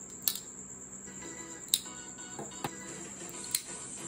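Folding knives being gathered up off a wooden table: about four sharp metallic clicks and clacks as the knives knock against each other and the tabletop.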